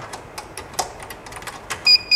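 Small scattered clicks and taps of a USB mouse cable being handled and plugged into a network video recorder. Near the end come two short, high electronic beeps about a quarter second apart.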